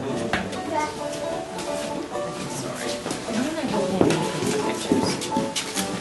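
A group of children talking over one another as they move about a small room, with music playing in the background.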